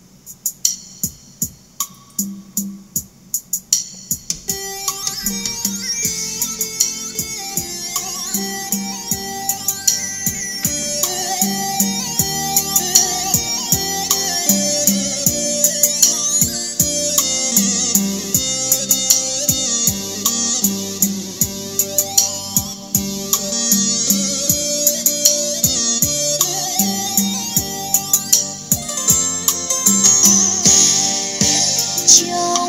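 Music played through a JBZ 106 compact portable karaoke speaker, which has a 15 cm woofer and a tweeter, as a sound demonstration. It is a plucked-string, guitar-like piece: sparse picked notes for the first few seconds, then fuller with a steady drum beat.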